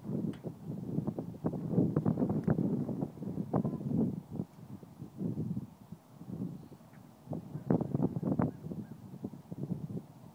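Wind buffeting the microphone in irregular gusts of low rumble and crackle, easing for a while in the middle and picking up again.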